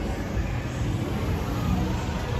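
Busy street traffic: small motorbike engines running as they pass close by, over a steady low noise from the road.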